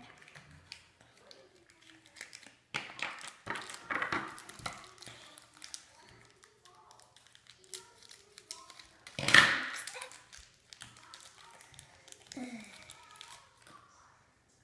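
Plastic toy packaging crinkling and being cut open with scissors, with one loud sharp rustle about nine seconds in. A child's voice makes a brief murmur near the end.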